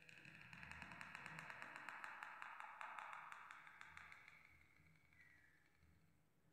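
Faint, dry scratching of a calligraphy pen's cut nib dragging across paper as a letter stroke is drawn, fading out after about four seconds.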